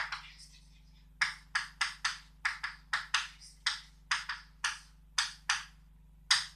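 Chalk writing on a blackboard: a quick series of sharp taps and short scratchy strokes, about three a second, beginning about a second in after a single tap at the start.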